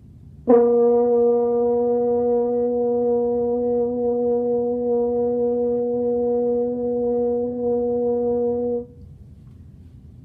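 French horn playing F with the first valve pressed as a long tone: a tongued attack about half a second in, then one steady note held for about eight seconds before it stops.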